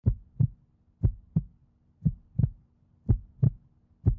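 Heartbeat sound effect: a low double thump, lub-dub, repeating about once a second.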